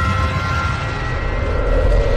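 Logo-intro sound effect: a deep rumble under the fading ring of an opening hit, swelling into a whoosh near the end.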